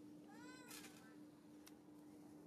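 A young macaque gives one short, high call that rises and then falls in pitch, about half a second long, ending in a brief rasp. A steady low hum runs underneath.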